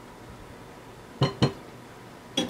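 Two quick clinks with a short ring, about a fifth of a second apart, as a plastic bowl and silicone spatula knock against a glass mixing bowl while egg yolks are poured and scraped in.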